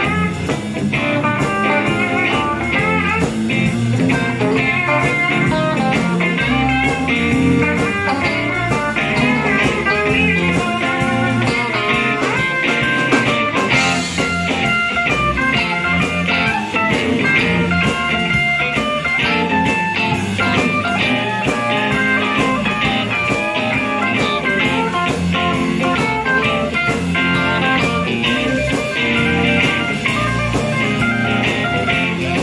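Live blues band playing an instrumental break: electric guitars, bass guitar and drums, with a harmonica played into a handheld microphone. No singing.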